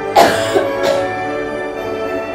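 Orchestral background music with sustained tones plays steadily. Just after the start, a person coughs loudly twice, a long cough and then a short one.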